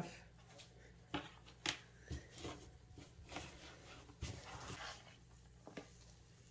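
Faint, scattered rustles and soft crackles from a gloved hand handling damp shredded paper and coir bedding in a plastic worm bin.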